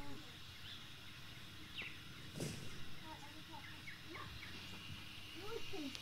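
Faint outdoor background with a few short, high chirps and one sharp click about two and a half seconds in; a voice begins just before the end.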